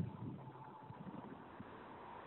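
Faint hiss and hum of an open telephone line as a caller's line is connected, with a faint steady tone and a few soft knocks at the start.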